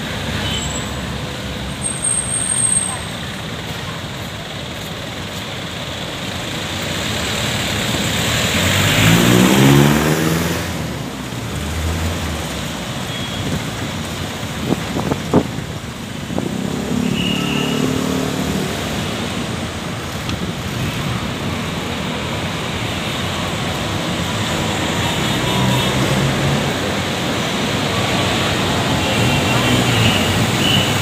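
City street traffic, vehicles running past steadily. About nine seconds in, one vehicle's engine passes close and loud, its pitch rising, and there are a few short sharp sounds around fifteen seconds in.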